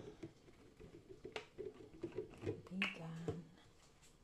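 A faint voice murmuring, with a few light clicks and knocks about one and a half and three seconds in.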